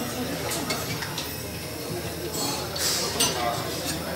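Hinged stainless-steel chafing dish lid being swung open, with several light metallic clinks and then a louder clattering scrape near the end as the dome lid goes back.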